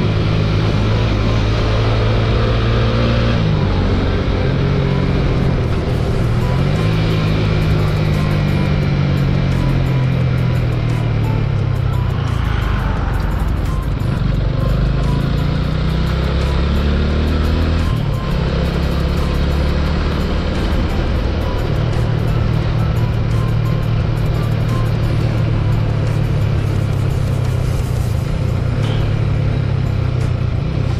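TVS Apache 200 motorcycle's single-cylinder engine running under way, with wind rush over it. The engine note rises and falls as the revs change, with marked drops about three and a half seconds in, around six seconds and around eighteen seconds that sound like gear changes.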